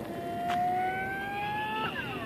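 Electric motor and propeller of an EFX Racer RC plane on a 6S battery, whining at high throttle. The pitch climbs steadily, then drops sharply near the end as the plane passes by.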